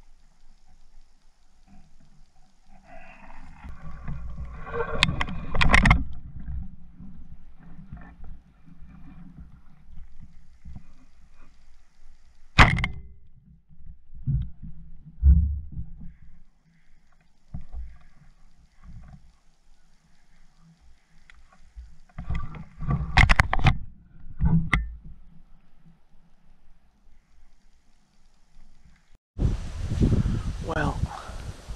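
Rustling, bumping and handling noise from a body-worn camera held against tall marsh grass. It is uneven, with sharp knocks or clicks about five seconds in, about twelve seconds in, and a cluster about twenty-three seconds in.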